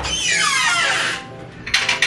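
Wooden kitchen cabinet door pulled open, with a squeak that falls in pitch for about a second, then a few quick clinks of dishes being taken off the shelf near the end, over soft background music.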